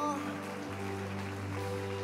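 Church worship band playing a slow song: a held chord from the guitars and keyboard over electric bass, between sung lines. A sung note trails off at the start, and the bass moves to a new note less than a second in.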